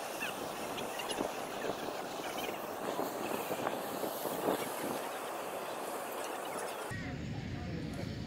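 Steady open-air background hiss with faint distant voices. The hiss stops abruptly about seven seconds in.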